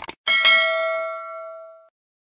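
Mouse-click sound effect followed by a notification-bell ding, struck twice in quick succession, that rings out and fades away over about a second and a half.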